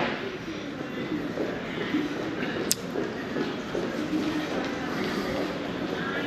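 Steady showroom background noise, a rumbling hiss with a faint murmur of distant voices, and a single sharp click a little under three seconds in.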